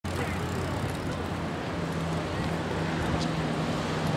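Steady outdoor rumble of traffic-like noise and moving air, heard from a moving bike, with faint voices of people nearby.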